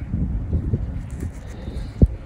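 Wind buffeting the microphone outdoors: a low, uneven rumble, ending in a sharp click.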